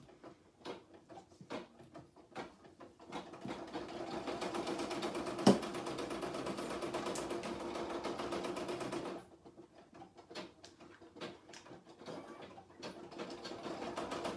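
Home embroidery machine stitching a small fill area in medium-peach thread. It starts with a few scattered clicks, settles into fast, even stitching about three seconds in with one sharp click midway, and falls back to scattered ticks after about nine seconds.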